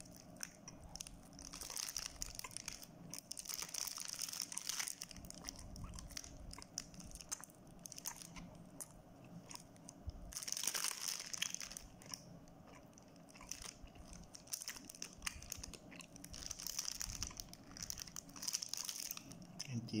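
A person chewing a bite of soft bread bun with wet mouth noises, while the bun's plastic wrapper crinkles in the hand in several bursts.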